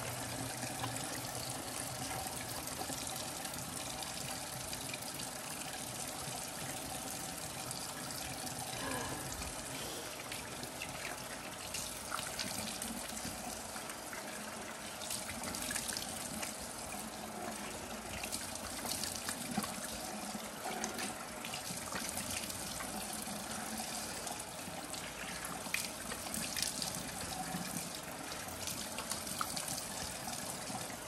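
Water running steadily from a bathroom tap into the sink, with irregular splashes and trickles as hands work under the stream.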